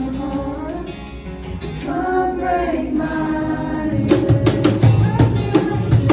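Unamplified acoustic performance: singing over two strummed acoustic guitars. About four seconds in, a cajón comes in with a steady beat of sharp slaps and low thumps.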